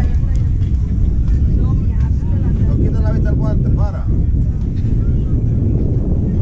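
Scattered distant voices of players and spectators over a loud low rumble that runs throughout.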